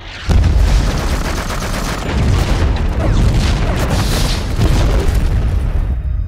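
War-film battle sound effects: a sudden loud explosion about a third of a second in, then continuous rumbling blasts mixed with rapid crackling gunfire.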